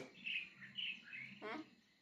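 A bird chirping: a quick run of short, high chirps through the first second or so. A brief spoken syllable follows about one and a half seconds in.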